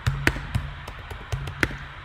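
Computer keyboard keys being typed: about seven separate clicks in two seconds, over a low hum.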